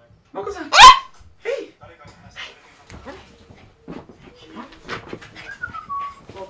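A small poodle barking. The loudest is one sharp bark rising in pitch about a second in, followed by shorter, quieter sounds.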